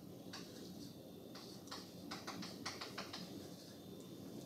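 Chalk writing on a blackboard: a run of quick, irregular, faint taps and short scratches as the chalk strikes and drags across the board.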